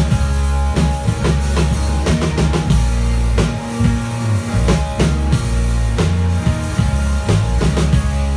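A live rock band playing loudly: drum kit, electric bass and distorted electric guitar, recorded from the crowd.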